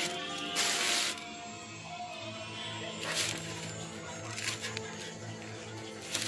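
Crisp baguette crust crackling as fingers press it: one long crunch about half a second in, then a few shorter crackles, over quiet background music.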